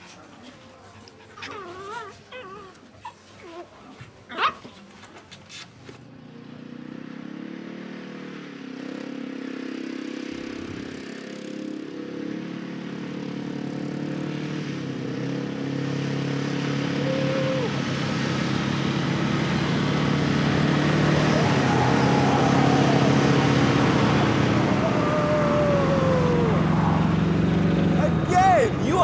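Several quad bike engines running, growing steadily louder as the bikes approach, with their revs rising and falling near the end. Before they start there are only a few short faint sounds, with a sharp click about four seconds in.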